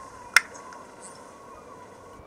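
A single sharp click about a third of a second in, over a faint steady background hiss with a thin, steady hum.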